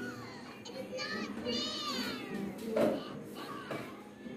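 High-pitched children's voices in the background, with one long wavering squeal or sung cry about a second in.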